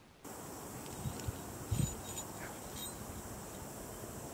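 Outdoor bush ambience with a steady high-pitched insect drone, and a few soft low thumps between one and two seconds in.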